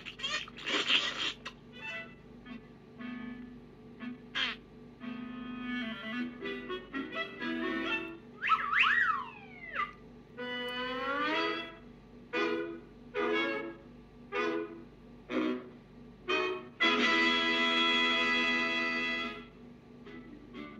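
Cartoon orchestral score with comic sound effects: a string of short stabbing notes, quick sliding squawk-like figures about halfway through, and a long held chord near the end that cuts off.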